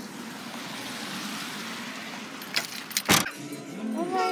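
A car's trunk lid slammed shut: a few light clicks, then one short heavy thump about three seconds in, over a steady outdoor hiss.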